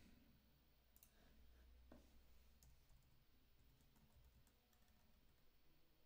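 Near silence: quiet room tone with a few faint, scattered clicks from computer use while a file is searched for.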